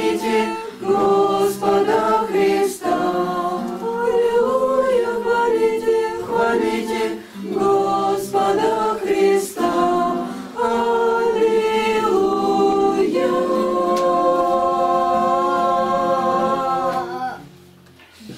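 A small mixed choir of teenage girls and boys singing a cappella, phrase after phrase, then holding one long final chord for about four seconds that stops shortly before the end.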